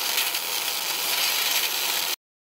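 A steady, high hiss of noise, a static-like sound effect, that cuts off suddenly near the end.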